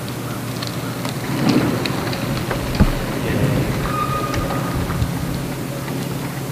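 A steady low mechanical hum under rumbling outdoor noise, with scattered sharp clicks, a single thump just before three seconds in, and a short steady tone about four seconds in.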